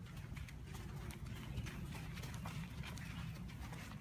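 Footsteps of several people walking on a dirt forest path, a scatter of light clicks and scuffs over a steady low rumble on the microphone.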